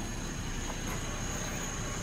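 A steady low background hum with a faint, high, steady whine over it; no distinct events.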